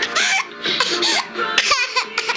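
A toddler laughing in short, high-pitched bursts.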